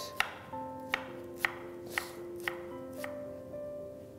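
Chef's knife chopping fresh ginger on a wooden cutting board: about six sharp strikes, roughly two a second, over background music.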